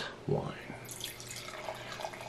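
Red wine poured from a bottle into a stemmed wine glass: a quiet stream of liquid splashing into the glass as it fills.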